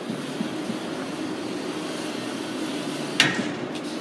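Stainless-steel mixer housing sliding along the steel rails of a slide base, with small clicks and then a single sharp metal clank about three seconds in, as the housing reaches the end of its travel. A steady hum runs underneath.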